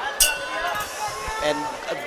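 Boxing ring bell struck once to end the round: a single clang just after the start with a short ring, following two earlier strikes, under commentary.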